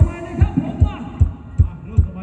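Live band's kick drum beating a steady dance rhythm, about two and a half beats a second, with light cymbal ticks on the beat while the singing drops out.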